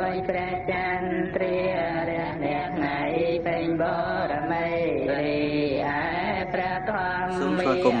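Chanting with long held notes that glide slowly from one pitch to the next, over a steady low drone.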